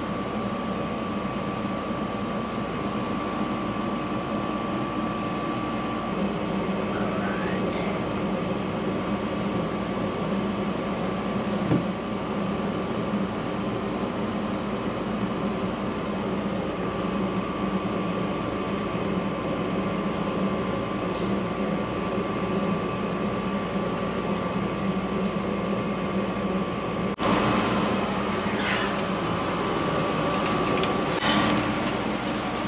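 Steady machine hum with a few constant low and mid tones, like HVAC equipment running, and a single light click about twelve seconds in.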